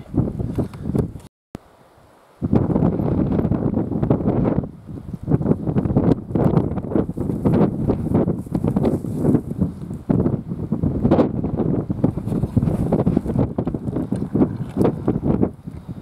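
Strong wind buffeting the camera microphone in gusts. It breaks off briefly about a second and a half in and comes back stronger a second later.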